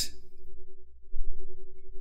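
Background music: a single steady held synth note over a low hum.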